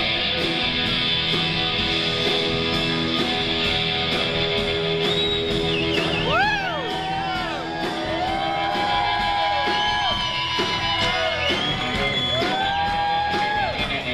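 Live rock band playing, with an electric guitar lead from a Telecaster-style guitar on top. From about five seconds in, the lead plays bent notes that rise and fall, some held for a second or two.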